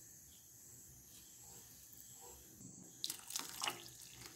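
Milk poured from a cup into a wide pan of grated carrot and milk, splashing into the liquid, starting about three seconds in after a near-quiet stretch.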